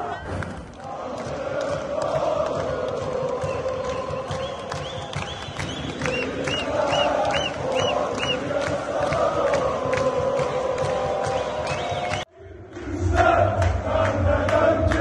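Fenerbahçe football crowd chanting in unison in a stadium, with rhythmic clapping and repeated high whistles partway through. The sound cuts out briefly near the end, then a louder, deeper chant follows.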